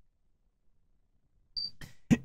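Near silence on a gated microphone. About a second and a half in there is a short, hissing intake of breath with a faint whistle, and a second one just after.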